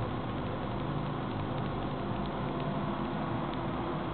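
Steady whir of a running desktop PC's cooling fans, with a faint low hum beneath.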